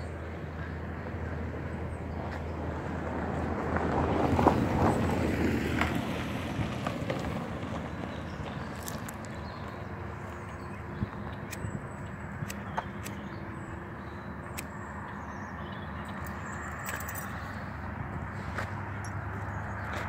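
Steady outdoor background noise with a low hum, swelling for a couple of seconds about four seconds in, and a few scattered light clicks later on.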